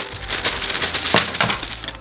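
Clear plastic packaging bag crinkling and crackling as it is handled, in quick irregular crackles.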